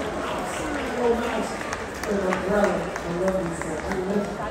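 Indistinct voices of people talking in a large hall, with a few faint light ticks.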